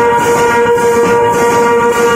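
Tasa party band playing: a brass instrument holds one long steady note over continuous drumming on tasa drums and dhols, with metal hand cymbals clashing about twice a second.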